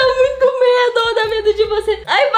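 A woman laughing in a long, high-pitched squeal that wavers and catches briefly for breath.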